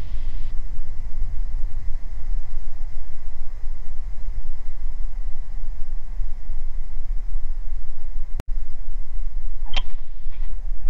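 Steady low cabin drone of the Beechcraft G58 Baron's twin six-cylinder piston engines at reduced power, with airflow noise, during the landing. The sound cuts out for an instant near the end.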